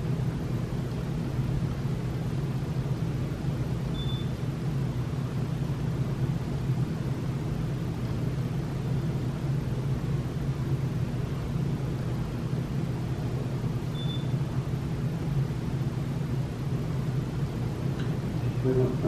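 Steady low background hum with a hiss over it, and a short high beep twice, about ten seconds apart.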